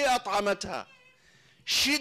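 A man's voice speaking in a lecture, a run of syllables that stops about a second in, then a short pause before the speech picks up again near the end.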